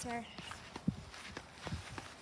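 Footsteps on grass and dirt: several uneven steps, with one sharper knock just before a second in.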